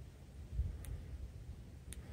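Two faint clicks about a second apart from the Sofirn SP40 headlamp's button being pressed to step up to its next brightness level, over a low background rumble with a soft low bump just before the first click.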